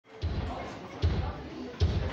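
Live band's kick drum beating alone at a steady pulse, three deep thumps with a click of the beater, about 0.8 s apart, in a large room.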